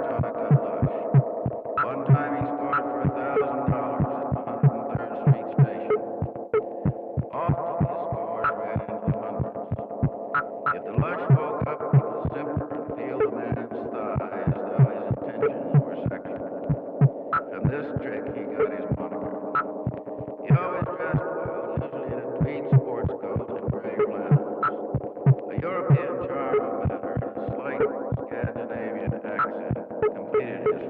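Experimental electronic text-sound composition built from processed speech recordings: a dense, layered humming drone of sustained tones that shift every second or two. Sharp clicks cut through it at an irregular two or three a second.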